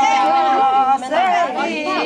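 Several women's voices overlapping, singing and talking at once; one sung note is held level for about a second, then the voices break off briefly and go on.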